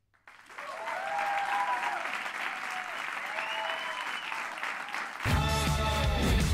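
Studio audience applauding, with a few cheers. About five seconds in, loud music cuts in over it.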